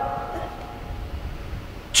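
A short pause in a man's speech amplified through a handheld microphone: the voice's echo dies away in the first moment, leaving a low background rumble. The voice returns right at the end.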